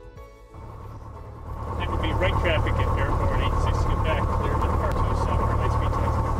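Zenith 601XL light sport airplane's engine and propeller running, picked up by an onboard camera with a heavy low rumble. It swells in over the first two seconds and then holds steady.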